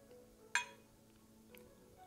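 A single light clink about a quarter of the way in, glass bottle against a steel jigger, with a short ring after it. A fainter tick follows near the end.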